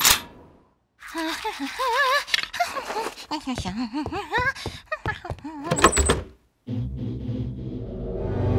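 A single rifle shot right at the start. Then a cartoon character's wordless, sing-song vocalizing, its pitch wobbling up and down, runs for about five seconds and ends in a few sharp knocks. Background music comes in near the end.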